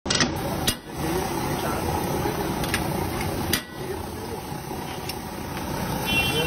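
Busy street-food stall ambience: a steady din of street noise and traffic, with a few sharp clicks scattered through it.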